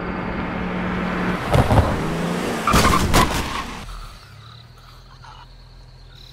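A car's engine revving as it speeds at a person, then two loud, heavy impacts about one and a half and three seconds in as it runs her down. The sound falls away about four seconds in.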